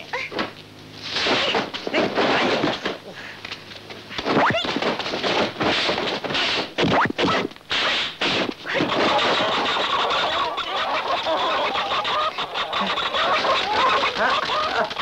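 Kung fu film fight sound effects: a quick run of sharp punch and swish hits for about the first nine seconds. After that a chicken squawks and clucks continuously.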